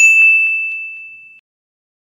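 A single bright ding sound effect: a bell-like chime struck once, ringing on one clear tone and fading out over about a second and a half.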